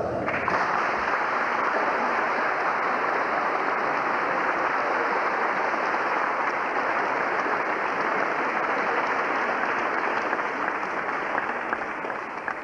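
A church congregation applauding, breaking out all at once and keeping up a steady clapping that eases off slightly near the end.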